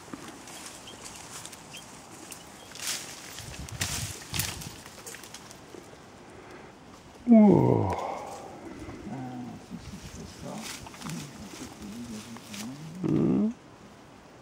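A loud vocal call that slides sharply down in pitch, about seven seconds in, with a few scattered sharp cracks a few seconds earlier; a short spoken 'ah' near the end.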